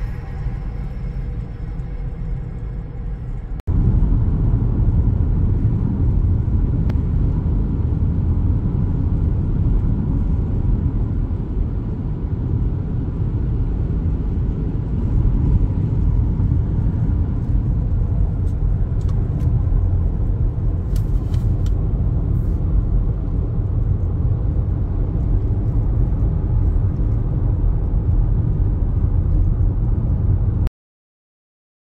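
Steady low rumble of a car driving at road speed, heard from inside the cabin: tyre, road and engine noise. It cuts out briefly about four seconds in and comes back louder.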